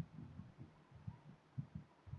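Faint, irregular low thumps, several a second, over quiet room tone.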